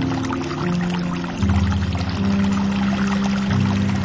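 Slow instrumental music with held low notes that change every second or so, laid over a continuous sound of trickling, pouring water.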